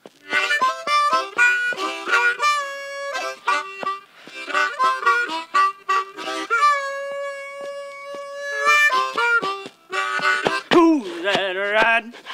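Solo harmonica played with cupped hands: a quick run of short notes, a long held note in the middle, then sliding, wavering notes near the end.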